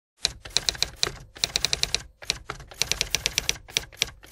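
Typewriter sound effect: quick runs of sharp key strikes in several bursts with short pauses between, typing out on-screen lettering.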